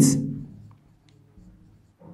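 Faint strokes of a marker pen writing on a whiteboard. Before that, the end of a spoken word dies away with a short room echo.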